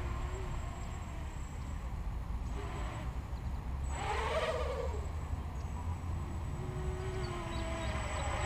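The brushless motors of a small quadcopter buzzing at a distance, with a whine that rises and then falls in pitch about four seconds in as the motors speed up and slow down. A steady low rumble runs underneath.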